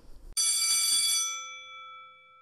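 A single bright bell-like chime, struck about a third of a second in and left to ring out. Its higher tones die away first and the lower ones linger.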